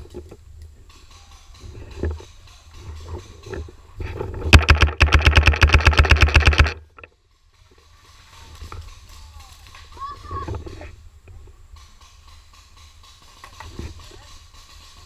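Paintball marker firing a rapid burst of about two seconds, roughly ten shots a second, starting about four and a half seconds in.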